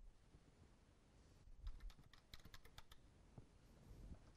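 Faint computer-keyboard typing: a quick run of about seven keystrokes, the word "torsion" typed into a browser's find box, starting about a second and a half in.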